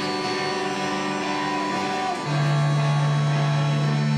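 Live rock band holding sustained keyboard and guitar notes, with no drums playing. About two seconds in, a louder low held note comes in underneath.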